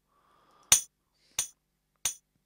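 Two short, sharp electronic clicks about two-thirds of a second apart, 90 beats a minute: the MPC Beats metronome count-in ticking off the bar before the programmed drum beat plays.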